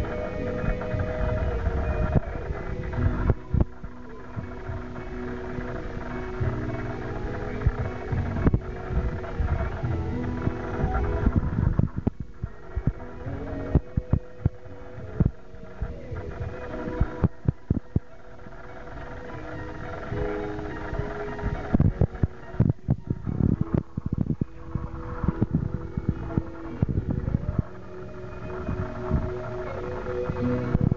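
A live band playing music, with held notes and a steady accompaniment, broken by frequent short low thumps.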